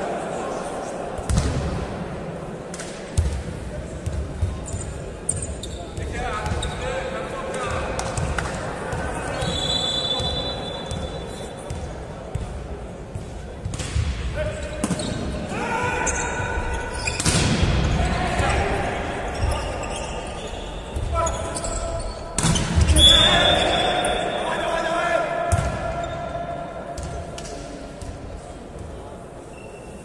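Volleyball being hit and bouncing on a hard sports-hall court, sharp slaps that echo round the large hall, with players and spectators shouting. The loudest bursts of hits and voices come about two thirds of the way through and again near the end.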